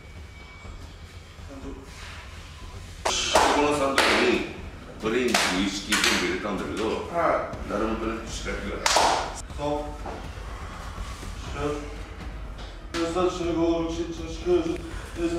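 Men's voices shouting and calling out in a sumo practice hall, mixed with several dull thuds, typical of wrestlers' feet stamping down during shiko leg lifts. The calls start about three seconds in and come in short bursts.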